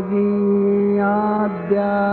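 Recorded devotional prayer chant: long, steady held notes on one pitch, dipping briefly at the start and again about a second and a half in.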